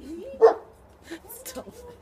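A single short dog bark about half a second in, with people's voices and laughter around it.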